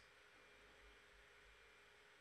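Near silence: faint steady background hiss of the recording.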